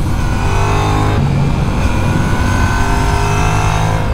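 Yamaha MT-07's 689 cc parallel-twin engine running under way at steady revs, its note shifting slightly about a second in, with wind rush over the onboard microphone.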